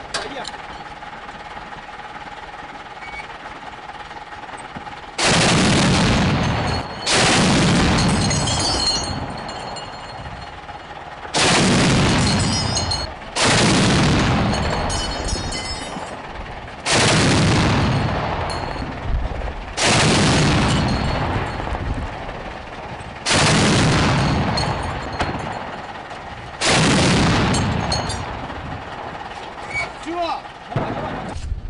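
Twin-barrel 23 mm anti-aircraft autocannon, a ZU-23-2 mounted on a truck, firing long bursts. After a few seconds of quieter lead-in come eight loud bursts of fire in loose pairs, each lasting about a second and a half to two seconds and fading out.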